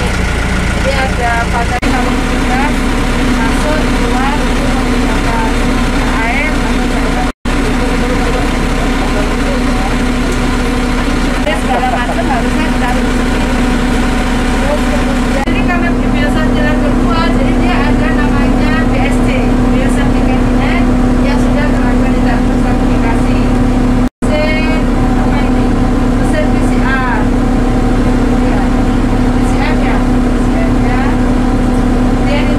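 Steady hum of an idling engine, with indistinct voices over it.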